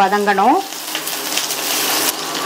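Shallots and garlic sizzling in hot oil in a stainless steel kadai, stirred with a wooden spoon. The steady hiss of frying comes clear about half a second in, once a voice stops.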